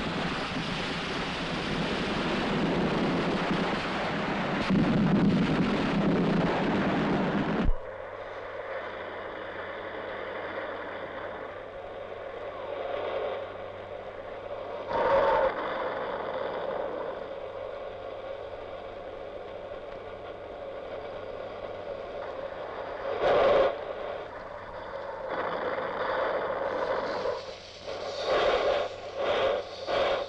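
Ground firework fountains hissing and crackling loudly, cutting off sharply about eight seconds in. A quieter steady drone follows, with louder swells now and then and a rhythmic pulsing near the end.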